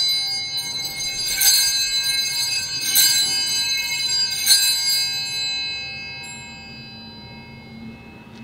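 Altar (sanctus) bells rung at the elevation of the chalice during the consecration: a bright jangle of several small bells, shaken again about every second and a half, four times in all, then left to ring and die away.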